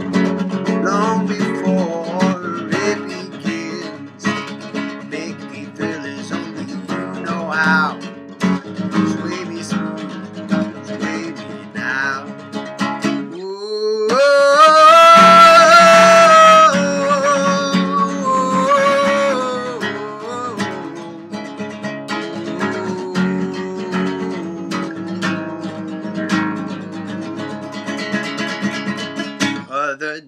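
Acoustic guitar strummed and picked through an instrumental break between verses, with a man singing wordlessly over it. About halfway through, his voice slides up into a loud, high held note for a few seconds, then settles onto a lower held note before dropping back under the guitar.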